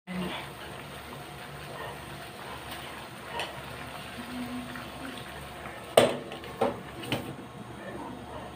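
Water boiling in a pot, a steady bubbling hiss. About six seconds in, a glass pot lid is set down on the pot with a sharp clank and two lighter rattles.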